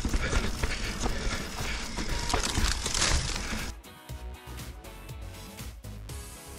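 Yeti SB150 mountain bike descending a dirt trail: a steady rush of tyre and trail noise with frequent knocks and rattles. It cuts off about three and a half seconds in, and background music with a steady beat follows.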